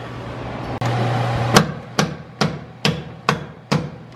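Hand hammer striking hard: six sharp blows in steady succession, about two a second, each with a short ring.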